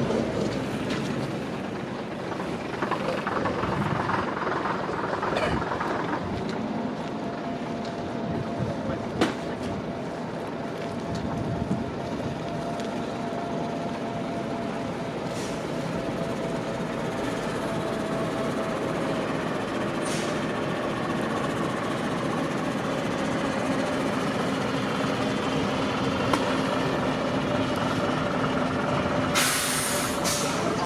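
Diesel double-decker buses, among them an MCW Metrobus, running and manoeuvring at low speed, with a steady whine through the middle. A short burst of air-brake hiss comes near the end.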